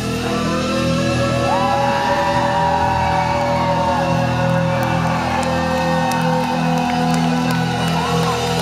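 Live symphonic metal band playing loudly: cello, electric guitar, bass, keyboards and drums, with long notes held over a steady beat.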